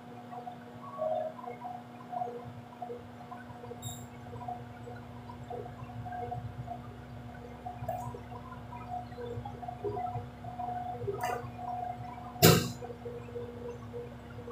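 Metal spoon clicking against a plastic bowl of glaze now and then, with one loud sharp knock near the end, over a steady low hum.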